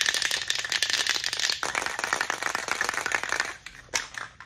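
Aerosol spray-paint can (Rust-Oleum Rust Reformer) being shaken hard, its mixing ball rattling rapidly inside to mix the paint; the rattling stops about three and a half seconds in.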